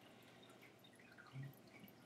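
Near silence: faint room tone with a few faint ticks and one short low murmur about one and a half seconds in.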